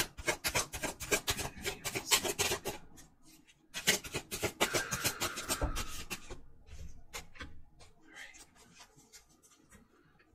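A deck of tarot cards being shuffled by hand: two quick runs of crisp flicking and sliding card sounds with a short pause between, thinning out to scattered clicks toward the end.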